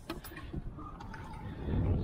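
Low rumble of a small boat at sea, growing louder near the end.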